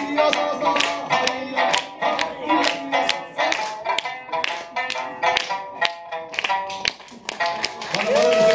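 Sanshin, the Okinawan three-string lute, played solo: a quick run of plucked notes, each starting with a sharp click of the plectrum, with a brief lull shortly before the end.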